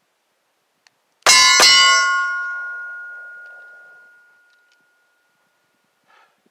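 Two quick 9 mm shots from a Taurus G2C pistol, about a third of a second apart, about a second in. A metallic ringing follows and fades away over about three seconds.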